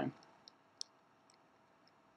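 Computer mouse clicks: two short, faint clicks about a third of a second apart, roughly half a second in, followed by a couple of fainter ticks, against near silence.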